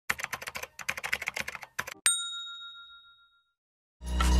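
Rapid key clicks like fast typing for about two seconds, then a single bright bell ding that rings on and fades out over about a second and a half.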